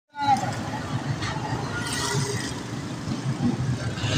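Busy street ambience: indistinct voices of people nearby over a steady rumble of passing traffic.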